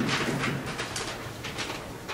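Dry-erase marker squeaking and scratching across a whiteboard in a series of short strokes.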